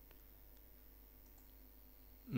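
Near silence: faint room tone with a few soft computer-mouse clicks, one at the start and two close together later.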